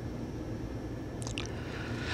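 Quiet studio room tone with a low hum. About a second in there are short wet lip smacks and mouth clicks from a man about to speak.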